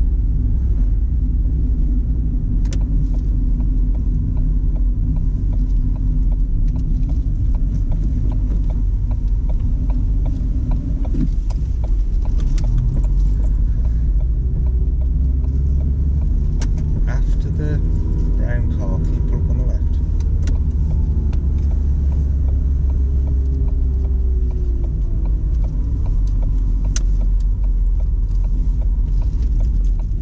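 Steady low road and engine rumble heard inside a moving car's cabin. Around the middle the engine note rises and falls as the car drives through a junction, with a few scattered clicks.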